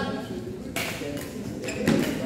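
Badminton rackets striking a shuttlecock in a rally: two sharp hits about a second apart, the second louder, with voices in the hall.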